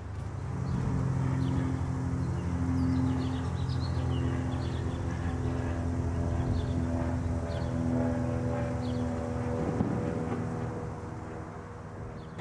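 A steady low drone of several held tones that swells in about half a second in and eases off near the end, with small birds chirping over it.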